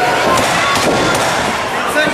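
Several sharp smacks and thuds from two fighters grappling on a padded cage canvas, over shouting from the crowd.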